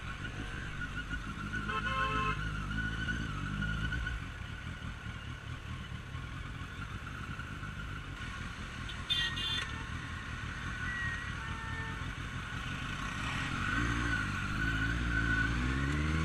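Suzuki Bandit 1250S inline-four engine running in city traffic, rising in pitch about two seconds in and again near the end as it accelerates. A few short high-pitched tones come in around the middle.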